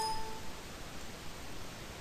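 Steady hiss of a recording's background noise, with a short ping of a few clear tones right at the start that fades within half a second.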